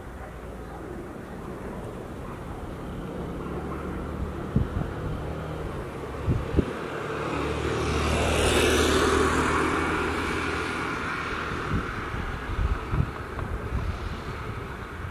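A motor vehicle passing by on the road, its engine and tyre noise swelling to a peak about eight to nine seconds in and then fading away. Short low thumps of wind buffeting the microphone come and go.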